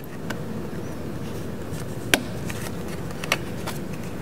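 Small aftermarket silk-dome tweeter being pressed into a plastic car-door trim panel: one sharp plastic click a little past halfway, with a few fainter clicks and handling noise over a steady low background hiss.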